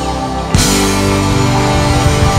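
Live rock band music. About half a second in, it turns suddenly louder and fuller, with dense drums and guitar.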